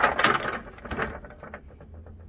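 Drawer of a Craftsman metal tool chest being pulled open: a burst of metallic clatter with tools shifting inside, then a run of quick clicks that fades out over about a second.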